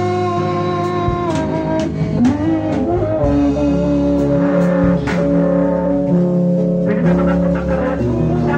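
A live worship band plays: a woman sings long held notes into a microphone over a drum kit and other accompanying instruments, with occasional drum strikes.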